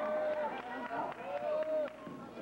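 Indistinct voices of spectators and players calling out in a gymnasium, with a few short knocks on the hardwood court.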